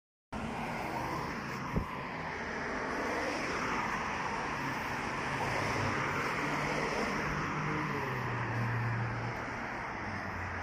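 Road traffic on a wide city street: a steady wash of car tyre and engine noise as cars pass, with one short click about two seconds in.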